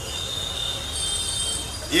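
A high, steady squeal over a low rumble, fading out just before two seconds in.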